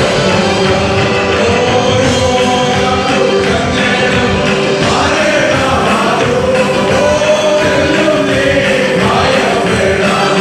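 Gospel hymn sung loudly by many voices together, choir-style, over instrumental accompaniment with a steady beat, running without a break.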